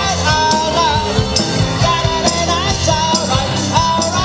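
Rock and roll song played by a band with piano and drums, with a lead vocal line.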